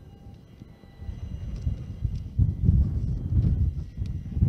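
Outdoor ambience at an automated container terminal: a low, uneven rumble that grows louder about a second in, with faint steady tones above it.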